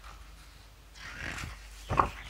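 A stiff photobook page being turned by hand: a paper rustle about halfway through, then a sharp flap near the end as the page swings over.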